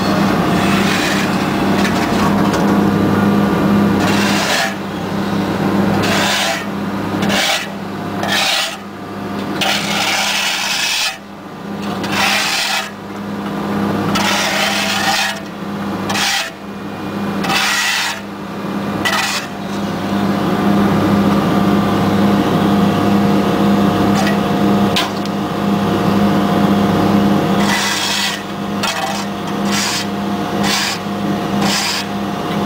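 Excavator's diesel engine running with a steady low hum, heard from inside the cab. Over it, bursts of rough rasping noise come and go through the middle stretch, easing off near the end.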